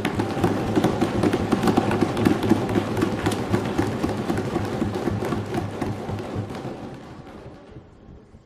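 Applause from a large seated audience: dense, steady clapping that dies away over the last second or two.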